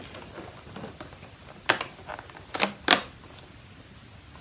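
Cardboard advent calendar door being opened by hand: light rustling of card, then three sharp snaps, the last the loudest.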